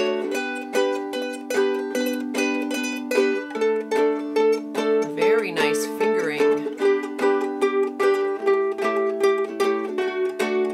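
Two ukuleles played together, plucking a D major scale with each note repeated eight times in an even pulse before stepping to the next note.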